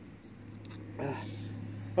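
Crickets chirring steadily in the background as one thin, high, unbroken tone, with a short faint murmur from the man about halfway through.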